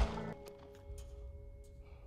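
Quiet background music with steady held tones. At the very start, the echo of a just-fired CZ P-10 C pistol shot dies away.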